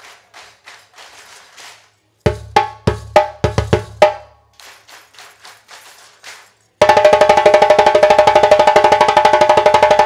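Djembe call-and-response: short struck djembe phrases, each answered by quieter audience hand-clapping copying the rhythm. Near the end comes a loud, fast unbroken drum roll of about three seconds that cuts off sharply.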